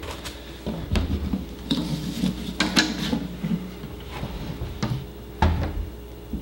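Knocks and clatter of a glass aquarium being handled and set on a steel sheet, a string of separate clicks and taps with a heavier low thump about five and a half seconds in.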